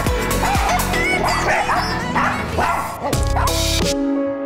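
A dog barking and yipping several times over dance music with a steady beat.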